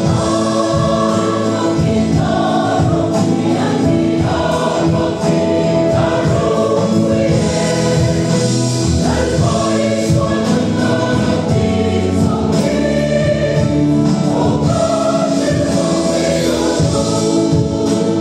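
Mixed choir of women and men singing a gospel hymn together in several parts, continuous and steady in loudness.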